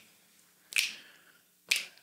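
Finger snaps keeping a slow, even beat, two snaps about a second apart, setting the time before a song comes in.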